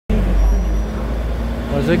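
Diesel engine of a Taiwan Railway DR2300-class railcar running with a steady low rumble and deep hum, heard from inside the car's doorway.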